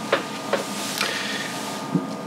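A few light clicks and knocks, about four in two seconds, over a steady faint hum.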